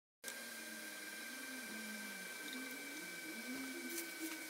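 Faint steady hiss with a thin, steady high-pitched whine, and faint wavering low tones underneath.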